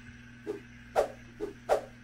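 Mouth-chewing of a crunchy almond cookie: four short crisp crunches about every half second, over a faint steady low hum.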